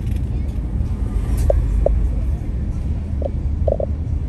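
Steady low rumble of a car moving slowly through town traffic, heard from inside the car, with a few short mid-pitched blips over it.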